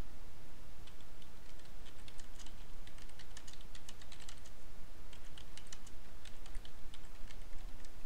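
Typing on a computer keyboard: a quick run of light key clicks that starts about a second in and stops shortly before the end.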